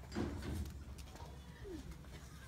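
Pigeon cooing: a low coo just after the start and a short falling note near the end.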